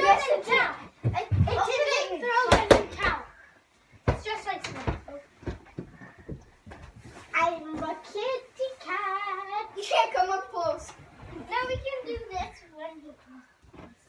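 Children's voices talking and calling out in a small room, with a few sharp thuds in the first three seconds.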